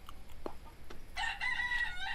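A rooster crowing: one drawn-out call that starts a little past halfway through.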